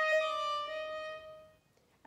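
Solo violin playing the end of a slow phrase in third position on the A string: notes step down into one long held note that fades out about a second and a half in.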